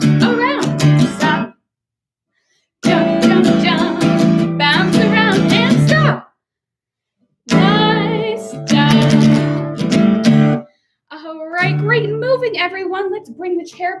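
Acoustic guitar strummed in short stretches that cut off abruptly into silence three times: the music stopping on cue in a stop-and-go movement song. A woman's voice sings or calls out over the strumming near the middle and through the last few seconds.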